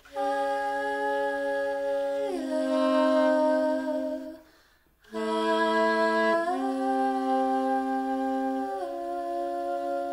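Jazz big band ensemble playing slow sustained chords, several parts moving together to a new chord about two seconds in, breaking off briefly around four and a half seconds, then coming back and shifting chord twice more.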